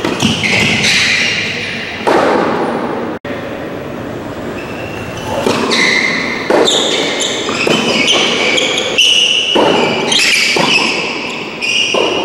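Tennis ball bounced and struck on serves: sharp hits a few seconds apart, each echoing in a large covered hall.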